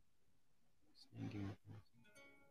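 Near silence, then about a second in a person's short low hum, followed by a briefer second one.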